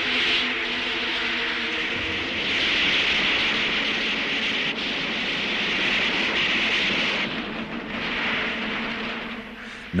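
A steady engine drone under a loud, even hiss. The engine's pitched tone fades out about two seconds in, and the hiss carries on.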